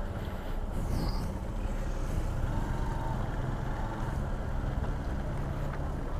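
Motorcycle engine running steadily at low speed in slow traffic, a constant low hum.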